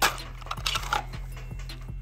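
Small steel parts clinking on a key cutting machine's metal clamp: a sharp metallic click right at the start, then brief scraping and a few light ticks as a spacer piece is handled and set in place.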